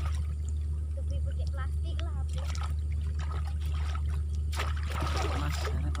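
Pond water sloshing and splashing as a person wades and shakes a wire-mesh basket through the water, with a louder run of splashes near the end. A steady low rumble and faint voices lie underneath.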